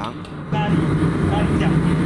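Steady low roar of a restaurant kitchen's wok station, starting suddenly about half a second in, with faint voices in the background.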